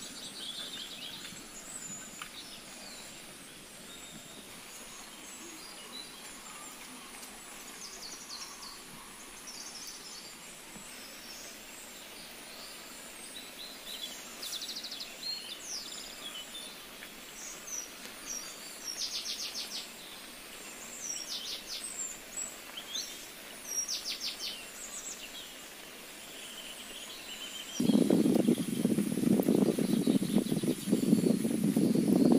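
Soft steady hiss of light monsoon rain with birds calling again and again, several short trilled chirps. About two seconds before the end a much louder, rougher noise starts and stays.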